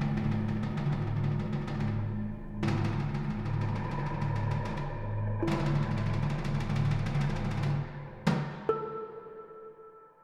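Electronic music played on an Akai EWI5000 wind synthesizer: a pulsing low bass with four crash-like hits about three seconds apart, each dying away. Near the end the bass stops and a held higher tone rings on, fading.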